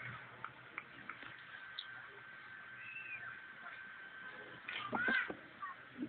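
Faint open-air ground background with a thin steady tone. About five seconds in there is a short, louder animal call that rises and falls in pitch.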